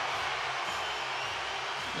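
Steady noise of a hockey arena crowd, with no distinct hit or voice standing out.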